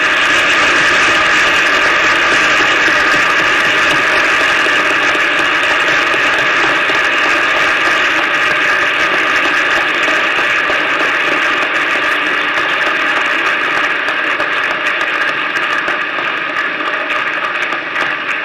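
Large crowd applauding in a hall: dense, steady clapping that breaks out at once after the speaker's closing words and eases slightly toward the end.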